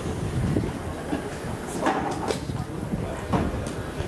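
GWR Castle class steam locomotive 5043 standing close by, giving a steady noisy rumble, with a few short knocks about two seconds and three and a half seconds in.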